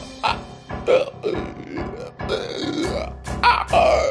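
A person making a run of short throat noises, one after another, over background music.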